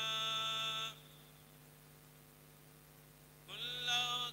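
A man's voice chanting an Islamic invocation in a melodic, drawn-out style through a PA. A long held note ends about a second in, a steady low hum fills a pause of a couple of seconds, and the voice rises into the next held note near the end.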